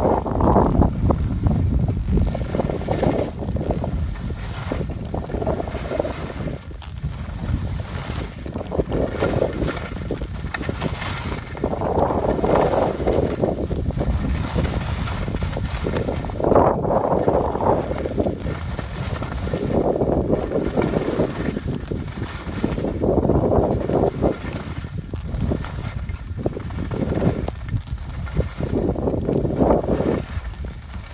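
Skis turning down a piste of fresh snow: a swishing scrape swells with each turn, about every three seconds, over a steady rumble of wind on the microphone.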